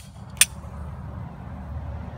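Steady low rumble of wind on the microphone, with one sharp click about half a second in.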